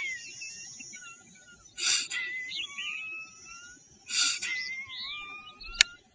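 Forceful nasal exhalations of Kapalbhati pranayama: two sharp breaths out through the nose, about two seconds apart. Birds whistle in the background, and a sharp click comes near the end.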